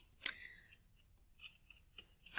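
A single sharp click about a quarter second in, followed by near silence with a couple of faint ticks.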